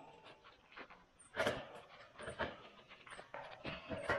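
Aviation tin snips cutting through a galvanized steel C-purlin: a series of short, irregular snips as the blades bite through the sheet metal, the louder ones about a second apart.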